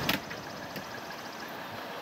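A single sharp thump right at the start as a small dog leaps up into the wire crate in an SUV's cargo area, then a steady background hum with a faint click.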